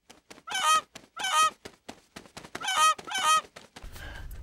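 A goose honking, four calls in two pairs, with a run of quick clicks between them, set against a silent background as an added sound effect.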